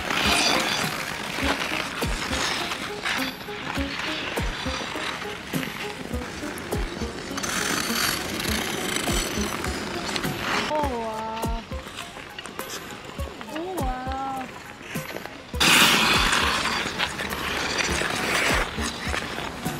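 Figure skate blades carving and scraping across outdoor ice in waves of hiss, the loudest a long scrape near the end. Two short rising-and-falling voice calls come in the middle.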